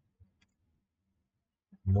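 A single faint mouse-button click about half a second in, over quiet room tone; a man's voice starts near the end.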